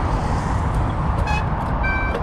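Steady wind rumble on a chest-mounted action camera while cycling. Two short high-pitched tones break through, one about a second in and one near the end.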